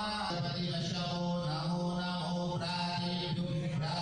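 A man chanting Hindu puja mantras in a steady, drawn-out recitation, with long held notes.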